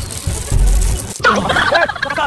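Deep bass thumps, then about a second in a pitched, wavering voice-like call that rises and falls in quick wobbles.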